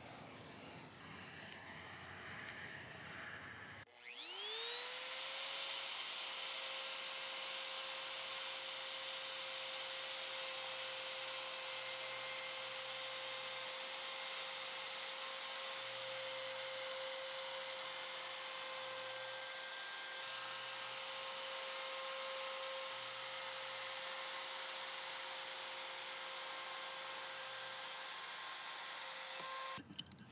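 Faint rubbing as paperback wood veneer is pressed down with a block, then, about four seconds in, a trim router spins up to speed and runs steadily with a high, even whine while it trims the overhanging veneer flush to the edge of the dresser top.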